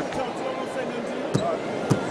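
A basketball bouncing twice on a hardwood court, about half a second apart, as a player dribbles before a free throw, over the low murmur of an arena crowd.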